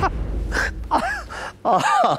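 A man laughing heartily: a few short, breathy laughs over a low rumble that dies away after about a second and a half.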